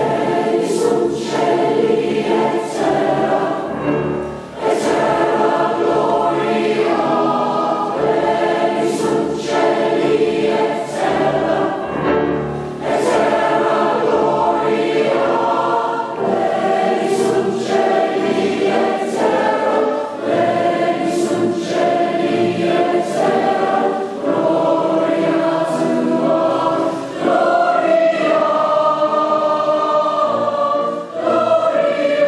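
Large mixed choir singing in full harmony with grand piano accompaniment, entering right at the start after a solo piano passage.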